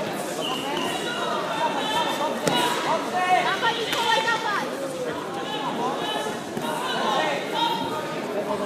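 Many voices talking at once in a large sports hall, with a single sharp knock about two and a half seconds in.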